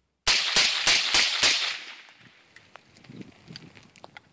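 A Colt M16 rifle firing a quick string of about six shots in just over a second, fed from a 3D-printed high-capacity magazine. Each shot rings out briefly and the echo fades over the next second.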